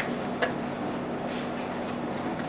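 Two light clicks about half a second apart, then a soft brush, over a steady low room hum.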